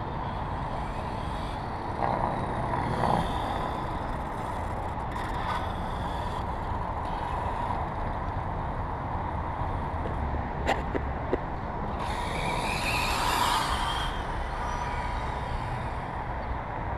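Electric 2wd Slash RC car, with a Blur ESC and an Alphastar motor, running on asphalt: motor whine and tyre noise rise and fall, loudest about two seconds in and again near the end, over a steady outdoor rumble.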